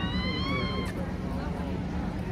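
A high-pitched, drawn-out wailing cry that ends about a second in, heard over crowd chatter.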